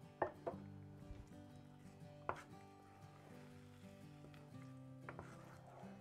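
Wooden cou cou stick stirring thick cornmeal in a pot, with a few sharp knocks of the spoon against the pot, over faint background music.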